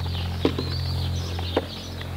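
Two light knocks about a second apart, typical of wooden spear shafts striking each other in sparring, over a steady low drone and faint bird chirps.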